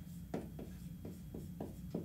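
Dry-erase marker writing on a whiteboard: a run of short strokes, about four a second, as letters are written.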